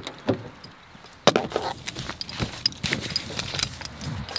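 A bunch of keys jangling and rattling, with a sharp click about a second in as a car door is opened.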